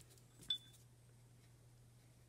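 A single light click with a brief, high clink-like ring about half a second in, over a faint steady low hum of room tone.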